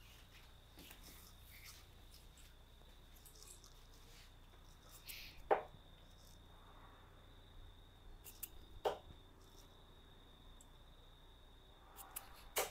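Two steel-tip darts striking a Winmau Blade bristle dartboard, about three and a half seconds apart, each a short sharp thud. A faint steady high-pitched whine runs underneath.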